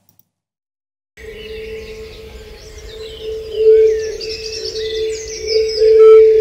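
A field recording of birdsong played back through two stacked narrow EQ boosts at 440 Hz, which pull a steady, resonant A tone out of it beneath the chirping birds. It starts about a second in, and the tone swells and fades with the loudness of the recording, a little too strongly by the producer's own judgement.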